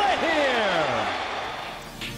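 A man's voice from a baseball broadcast sliding steeply down in pitch over about a second, over ballpark crowd noise. The sound fades away near the end.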